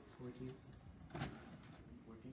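Faint voices with one sharp click about a second in, as a hand presses the front of a desktop computer tower, likely its optical drive's eject button.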